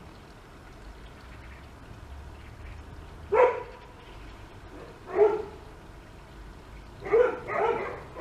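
A dog barking: one bark about three seconds in, another about five seconds in, then two barks close together near the end.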